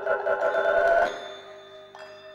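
Music of bell-like, chiming tones: a rapid ringing flutter over several held notes breaks off about a second in, leaving the notes ringing on more quietly, and a fresh struck note sounds near the end.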